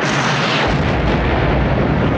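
Film sound effects of a shoulder-fired rocket launcher going off, then a large explosion that runs on loudly, its deep low end swelling under a second in.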